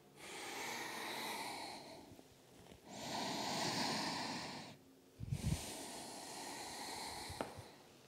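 A woman breathing deeply and audibly: three long breaths of about two seconds each, with a soft low thump about five seconds in.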